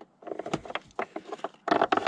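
Metal battery hold-down rod knocking and scraping against the battery tray as it is lowered into place beside a car battery: a run of small clicks and knocks, loudest near the end.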